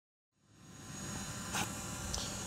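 Steady background hiss with a low hum, fading in after a moment of silence, with a single short tap about one and a half seconds in.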